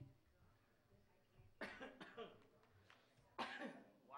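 A quiet room with two short coughs, one about one and a half seconds in and the other near the end.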